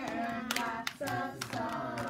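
A group of young children singing a song together, with hand claps mixed in.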